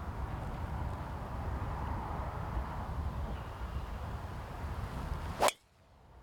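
Wind rumbling on the microphone, then a single sharp crack of a driver's clubhead striking a golf ball off the tee near the end.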